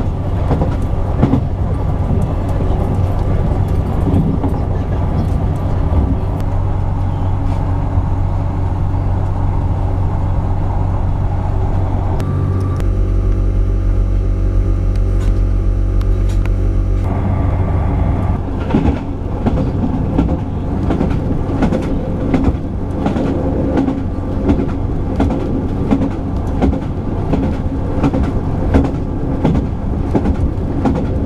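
Diesel passenger train heard from inside the carriage: steady engine and running hum with rapid clicks from the wheels on the rails. For a few seconds in the middle the clicking stops and only a steady low hum remains, then the clicking running noise returns.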